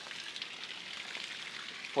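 Spring water running, a steady soft hiss.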